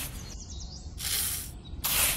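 Rhythmic scraping hiss of rice grains being pushed across sand by a pen tip, one stroke about every second, each about half a second long.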